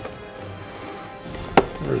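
A single sharp tap about one and a half seconds in, from the cardboard action-figure box being handled and turned over in the hands.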